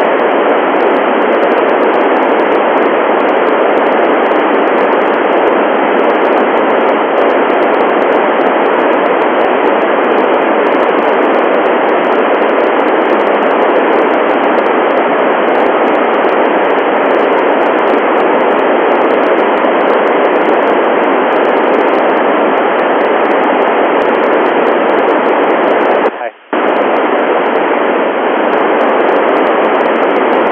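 Steady FM radio static hiss from the Icom IC-9700's 70 cm satellite downlink receiver, with no voice on the channel. It cuts out briefly about 26 seconds in.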